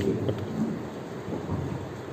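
Low, steady rumbling room noise in a pause between a man's amplified phrases, with the end of a spoken word at the start.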